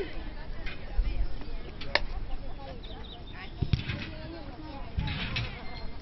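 Open-air ambience of a youth football match: faint, distant shouts from players and onlookers, with one sharp click about two seconds in and a few dull low bumps in the second half.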